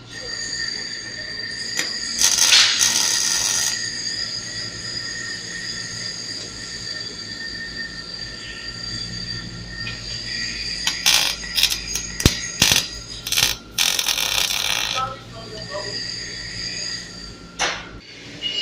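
Steel being cut on a go kart frame, cutting the slot for the chain: a steady high whine broken by harsh cutting bursts, one about two to four seconds in and a cluster from about eleven to fifteen seconds.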